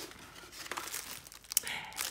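Clear plastic packet crinkling as it is handled, with a sharp click about a second and a half in, followed by louder crinkling.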